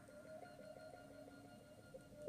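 Faint music from a vinyl record playing on a turntable: the soft opening of a pop song, a few held tones.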